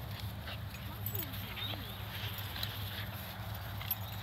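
Dogs playing on grass, with soft scattered clicks and a brief wavering vocal sound about a second in, over a steady low rumble.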